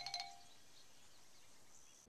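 The tail of a short tinkling chime sting fades out in the first moment, then near silence.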